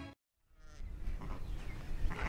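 Background music cuts off at an edit into a moment of dead silence, then faint outdoor noise from a sheep pen as a lamb is handled.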